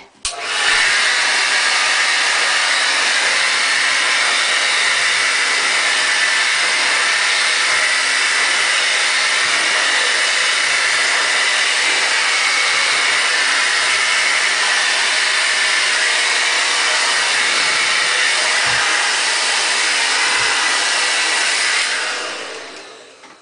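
Handheld ionic tourmaline hair dryer running, a steady airflow whoosh with a motor whine, switched on about half a second in and held at a constant speed. It begins to wind down right at the end.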